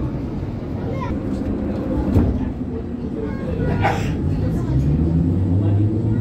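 Prague tram running along its rails, heard from inside: a steady low motor and wheel noise with a sharp click about two seconds in, under indistinct voices of people on board.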